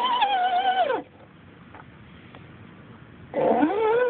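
Axial SCX10 RC crawler's electric motor and gears whining as it drives, the pitch wavering with the load, then falling away as it slows to a stop about a second in. After a faint pause of about two seconds, the whine rises again as it pulls away.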